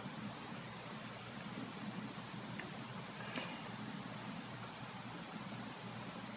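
Faint steady background hiss of room tone, with one faint tick a little over three seconds in.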